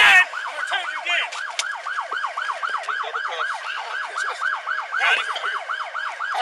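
Police car siren in yelp mode, rapid up-and-down sweeps about five a second, running continuously. There is a brief loud burst of noise right at the start.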